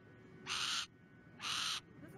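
A perched hawk giving two short, harsh, rasping calls about a second apart.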